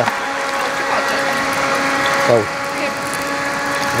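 Small battery-powered fan running steadily with a whirring hum, blowing air onto charcoal embers in a grill to make them draw. A voice cuts in briefly about halfway through.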